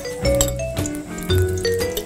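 Instrumental background music: a melody of held notes changing pitch every half second or so, over a low bass.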